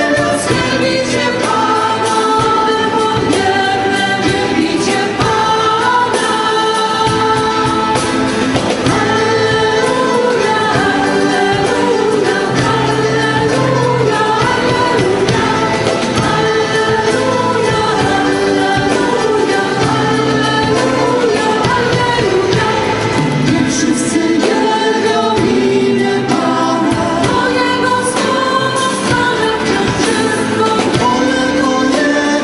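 Amplified worship vocal group, several mainly female voices, singing a praise song together with band accompaniment.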